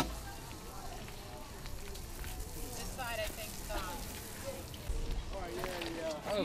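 Faint distant chatter of several people over a steady low hiss, with a sharp click at the very start.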